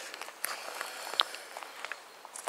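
Footsteps of a person walking in a garden: a scatter of soft crunches and ticks, with a couple of sharper clicks.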